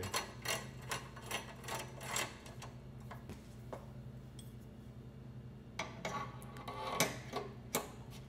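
Metal optical mounting hardware clicking and tapping as parts are handled and fitted. There is a run of light ticks in the first two seconds, a pause, then a cluster of clicks and knocks near the end as a tube is set onto its mount, all over a faint steady hum.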